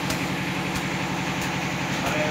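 A steady, engine-like machine drone with a low hum, and a faint tick repeating about every two-thirds of a second.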